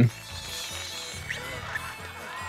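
Faint film soundtrack under the reaction: soft music with a few short animal calls.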